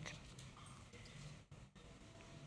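Near silence: faint room tone in a pause between a man's sentences.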